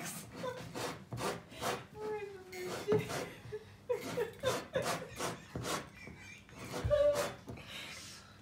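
Fingers twisting and scraping at the top of a glass wine bottle, trying to work it open by hand: a string of short, irregular rubbing scrapes, with a brief chuckle or murmured voice twice.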